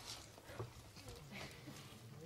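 Faint footsteps of shoes on a stage floor, with a few light scattered knocks.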